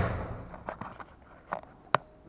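A dull thump at the start that dies away over about half a second, then several light clicks and knocks, the sharpest one near the end.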